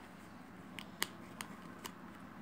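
A child's black school bag being handled and closed: about four faint, sharp clicks from its zip and metal fittings in the second half, over light rustling.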